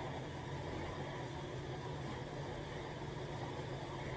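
Steady room tone: an even low hum with a hiss over it, unchanging, with no distinct events.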